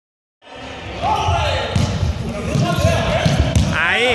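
Running feet thudding on a hard sports-hall floor, with players' voices calling out and echoing in the large hall; the sound starts about half a second in.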